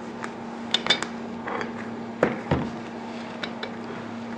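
Metal parts of an SMC filter-regulator-lubricator unit clicking and clinking as they are handled and taken apart, a few short light knocks scattered through.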